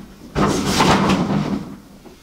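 A large cardboard gift box being pushed aside across a surface, making a rough sliding scrape for a bit over a second, starting about half a second in.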